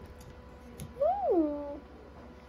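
A single short vocal call, under a second long, that rises then falls in pitch, about halfway through.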